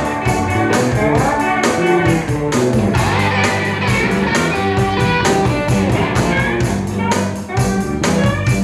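Live rock band playing an instrumental passage: electric guitar leading with bent, gliding notes over a steady bass line and drum beat.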